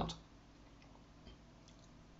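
Quiet room tone with a steady low hum and a couple of faint ticks, after a spoken word trails off at the very start.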